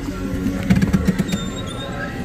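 A café entrance door being pushed open, with a quick run of clicks and rattles from the door about halfway through, while music plays in the background.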